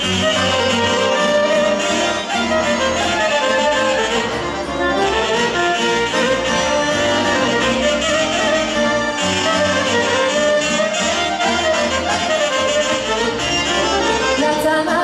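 Live Romanian Banat folk band playing dance music, a violin carrying the melody with accordion accompaniment over a steady bass beat.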